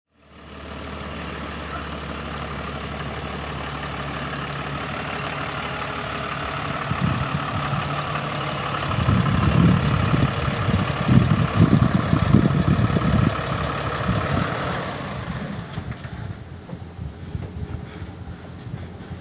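Pickup truck engine idling steadily, a low hum that fades somewhat after about seven seconds, with irregular low rumbling bursts over it in the middle.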